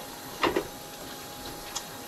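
Fish pieces being worked by hand in a plastic bowl of batter: one sharp click about half a second in and a fainter tick later, over a low steady background.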